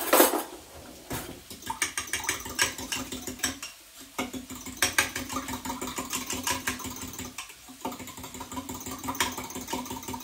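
Eggs being whisked by hand in a glass jug: a fast, even clicking of the utensil against the jug, pausing briefly twice. A short clatter sounds right at the start.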